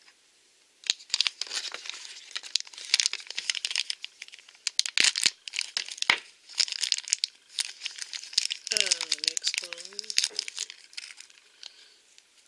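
A crinkly plastic Shopkins blind bag being opened and crumpled by hand: a dense run of crackles that starts about a second in and goes on until near the end. A brief hummed voice sound comes in around nine seconds in.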